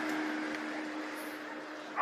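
Steady street background noise: an even hiss with a constant hum, growing slightly quieter.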